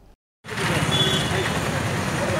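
A moment of silence, then from about half a second in, steady outdoor background noise: a hum like road traffic with faint voices in it.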